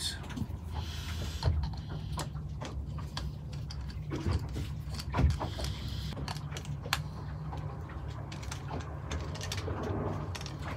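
Hand screwdriver working screws out of a plastic bilge pump base, with scattered small clicks and scrapes of metal on plastic, over a low steady hum.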